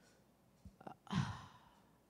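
A person sighs audibly into a handheld microphone, a short breathy exhale about a second in that carries a brief hesitant "uh", with a couple of faint mouth clicks just before it.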